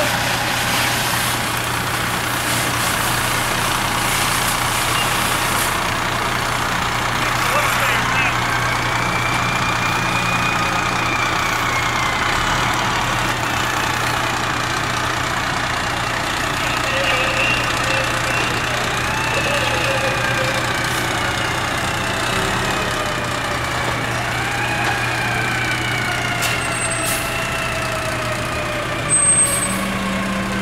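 Fire truck engine running steadily on scene, a constant low drone, with slow rising and falling tones over it and a brief louder noise near the end.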